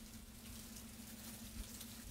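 Faint steady hiss with a low steady hum underneath.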